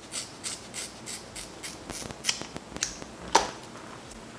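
Hair-cutting shears snipping repeatedly through a ponytail of curly wig hair, about three snips a second, with a louder, sharper snip near the end.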